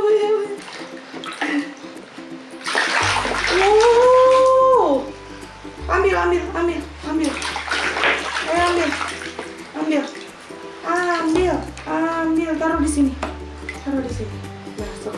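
Water splashing and sloshing in a plastic tub as a small child's hands scoop through it, heard in bursts from about three seconds in.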